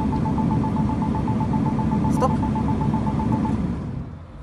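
BMW X1's parking-distance sensors beeping in a rapid, evenly spaced series at one pitch while the car creeps into a parking space, the rapid rate a sign of an obstacle close by; the beeping stops about three and a half seconds in. Underneath runs the low steady rumble of the car.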